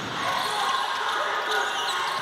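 Basketball dribbled on a hardwood court over a steady hum of arena background noise.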